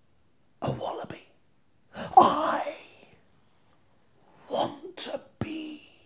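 A man's voice in three short, breathy vocal bursts with silent gaps between: drawn-out, theatrical syllables of a slowly delivered spoken line.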